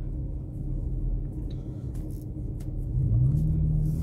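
Steady low rumble of a vehicle engine running, with a hum that rises in pitch about three seconds in and then holds. Light rustling of a satin head scarf being adjusted by hand.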